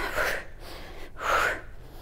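A woman breathing audibly twice, about a second apart: short, breathy puffs with no voice.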